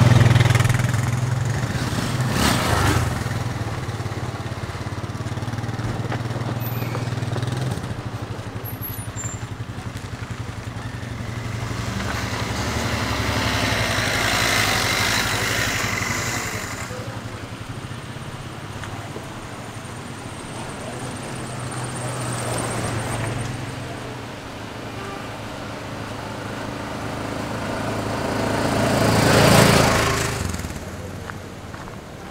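Motor vehicles driving past on a dirt road: a low engine hum through the first several seconds, then passes that swell and fade around the middle, again a little later, and a loud one near the end.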